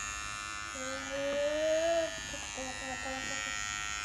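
Electric hair trimmer buzzing steadily as it cleans up the hairline behind a small boy's ear. A voice makes a long wordless rising note about a second in and a shorter one near the end.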